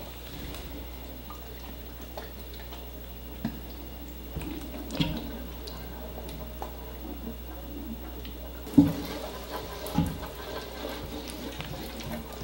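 Isopropyl rubbing alcohol poured from a plastic bottle onto felt in the bottom of a glass fish tank: a quiet trickle of liquid, with a few light knocks from handling the bottle and tank.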